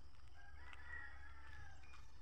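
A rooster crowing once, a single drawn-out call lasting about a second and a half, over a steady low rumble.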